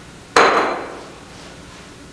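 A single sharp knock, loud and sudden about a third of a second in, with a brief ringing tail that dies away within about half a second.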